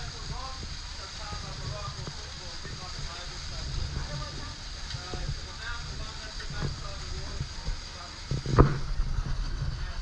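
Water gushing from a waterslide's outlet and splashing into the sea, under a steady low rumble, with faint distant voices. A sharp knock sounds once near the end.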